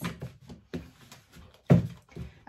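A tarot deck shuffled by hand: scattered soft card clicks and slaps, with one louder thump near the end.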